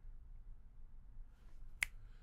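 A single sharp finger snap near the end, after a quiet pause.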